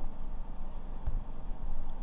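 Low background rumble with a faint click about a second in; no distinct event.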